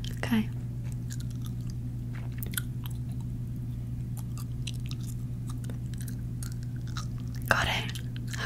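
Soft, scattered small clicks over a steady low hum, close to the microphone.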